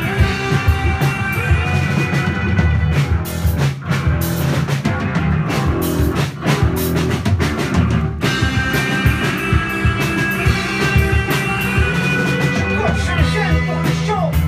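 Live rock band playing loud, with electric guitars and bass guitar through amplifiers.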